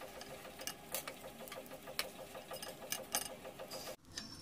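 Ghee crackling and sizzling on a hot cast-iron tawa under pav buns: a quick, irregular ticking over a faint steady hum.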